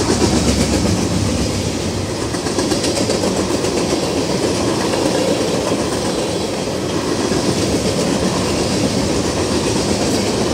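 Freight cars of a Norfolk Southern train passing close by at speed: a loud, steady rumble and rattle of steel wheels on the rails.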